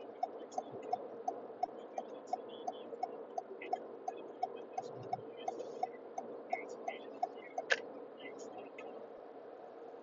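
Car turn-signal indicator ticking evenly, about three ticks a second, over the low hum of the car's cabin; the ticking stops about eight seconds in.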